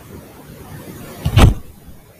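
Faint background hiss, then a single loud thump about a second and a half in.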